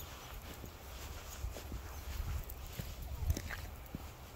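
Footsteps and scattered soft clicks on a dirt and gravel trail over a low wind rumble on the mic, with one short rising cry near the end.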